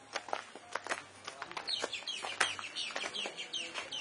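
A run of short, high bird calls, each falling in pitch, repeated several times a second through the second half, over scattered footsteps on dirt and gravel.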